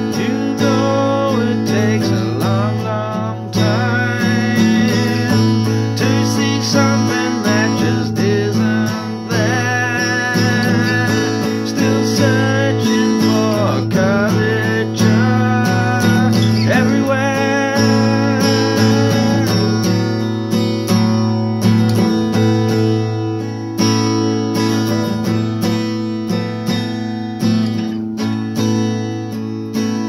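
Acoustic guitar strummed, with a man singing over it; the singing stops about two-thirds of the way in and the guitar plays on alone.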